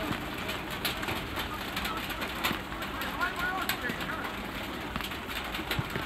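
Open-air football match sound: young players' shouts and calls on the pitch, heard at a distance over a steady outdoor noise, with a few short sharp knocks.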